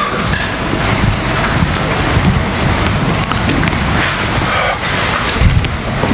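Loud, irregular rumbling and rustling noise on the microphone.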